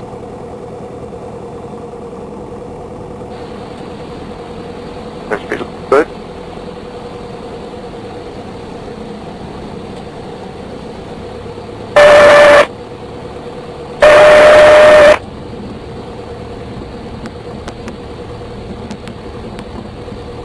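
Steady engine and propeller drone of a single-engine Beechcraft Sundowner heard inside the cabin on final and in the landing flare, with a few brief short sounds about five to six seconds in. About twelve and fourteen seconds in come two loud blasts of a steady horn-like tone, the second one longer, which fit the stall warning horn sounding as the airplane slows in the flare just before touchdown.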